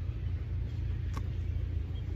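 Steady low rumble, with one short sharp click a little past halfway.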